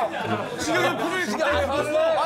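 Several people talking over one another and laughing, with short low bass notes of background music underneath.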